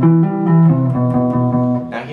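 Electric guitar playing a C major 7 tapping arpeggio lick. Several notes follow in quick succession and ring into one another.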